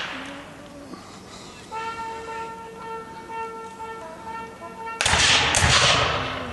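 A bugle sounding a call on one long held note, with a brief higher note near its end. About five seconds in, loud black-powder gunfire breaks out in a few rapid shots.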